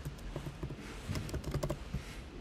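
Fast typing on a computer keyboard: a quick, uneven run of key clicks as a string of letters is entered, most of them in the second half.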